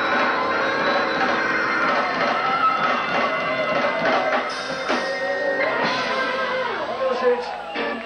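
Blues band playing live: guitar and drums in a loud, dense mix, with drum and cymbal hits standing out in the second half.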